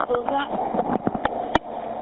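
Playback of a noisy 911 telephone-call recording: faint, muffled voices under a steady hiss and a low hum, with a few sharp clicks, the loudest about one and a half seconds in.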